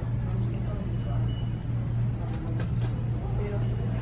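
Shop background: a steady low hum with faint voices talking somewhere off and a few light clicks.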